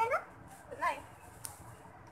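A toddler's high-pitched whiny voice: one call trailing off at the start and a second short one about a second in.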